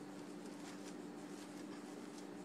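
Faint rustling and crinkling of wire-edged fabric ribbon as the loops of a pom-pom bow are pulled and fluffed by hand, over a steady hum.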